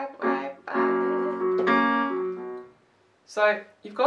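Piano chords played on an electronic keyboard, three in a row, each held and the last dying away nearly three seconds in. A woman's speaking voice comes in near the end.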